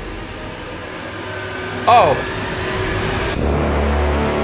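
A steady rumbling noise in an animation soundtrack, joined by a low steady hum about three and a half seconds in.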